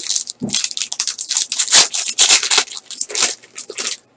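The wrapper of a 2013 Panini Black football card pack being torn open and crumpled by hand: a dense run of crinkling, crackling rips.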